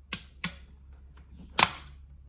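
Metal ring-pull lid of a wet cat food tin being pulled off and handled: three sharp metallic clicks, the last and loudest about a second and a half in, ringing on briefly.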